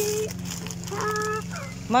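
Two short, held voice-like notes: one trailing off just after the start, another about a second in, over a steady low hum.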